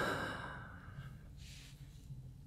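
A man's long breathy sigh close to the microphone, fading over about a second, followed by a softer breath partway through.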